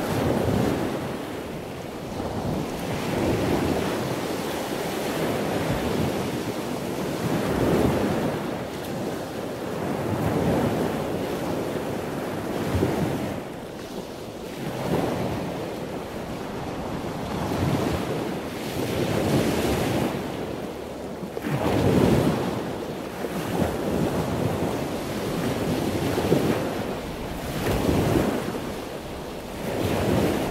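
Ocean surf: waves breaking and washing up the beach, swelling and fading every two to three seconds, with wind on the microphone.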